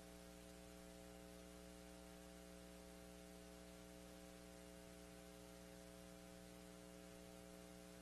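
Near silence: a faint, steady electrical hum over low hiss, unchanging throughout.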